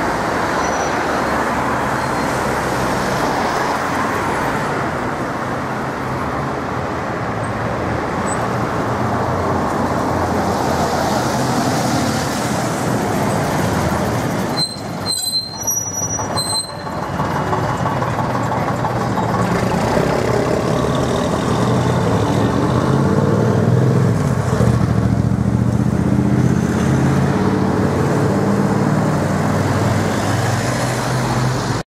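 Road traffic passing, then the diesel engine of a London Transport RF single-deck bus running close by as it pulls past. The engine grows louder through the second half.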